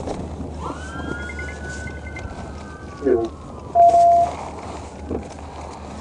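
A siren wails once: its pitch rises quickly, then falls slowly over about three seconds, over a steady low hum. A short steady beep sounds about four seconds in.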